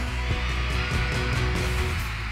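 Live pop-rock band playing a gap between sung lines, with heavy bass and drums and no vocals.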